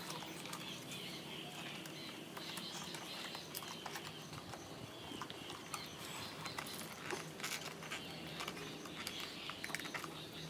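Stiff printed cardboard puzzle pieces being handled and pressed into their slots: scattered small clicks and scrapes of card throughout, over faint high chirping and a low steady hum.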